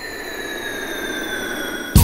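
A break in a Greek pop song: with the drums and bass dropped out, a sustained electronic tone slides slowly down in pitch over a gradually swelling noise sweep. The full band comes back in with a hit at the very end.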